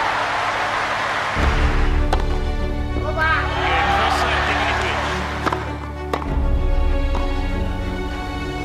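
Crowd applauding and cheering, then background music with a heavy bass line comes in about a second and a half in and carries on under the crowd noise, with a few sharp knocks along the way.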